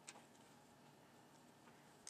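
Near silence, broken by one sharp light click just after the start and a faint tick near the end: small hardware on a radar mount's bracket clicking as fingers turn and handle a nut.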